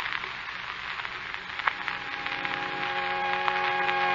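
Hiss and crackle of an old radio transcription recording, with a few clicks. About halfway through, a held organ chord of several steady notes swells in and grows louder: a music bridge leading into the drama.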